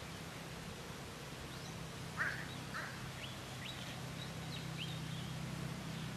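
Birds calling in the open: two loud harsh calls about two seconds in, followed by a run of short high chirps. A low steady hum runs underneath and grows a little louder near the end.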